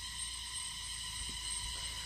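Faint steady background in a pause between speech: a thin, high, multi-pitched whine over a low rumble, with no distinct event.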